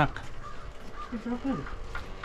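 A short, faint voice about a second in, over a low steady outdoor rumble.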